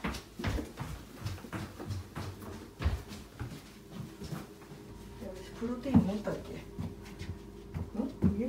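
Footsteps and small knocks, two or three a second, as someone walks carrying a cockatoo on her shoulder. About six seconds in comes a short voice-like sound with a sharp peak, over a faint steady hum.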